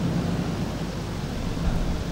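Steady low hum and hiss of room noise picked up by the lecture microphone, with a soft low thump near the end.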